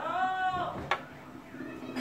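A small child's high-pitched wordless call, held for almost a second and gently rising then falling, followed by a single sharp click.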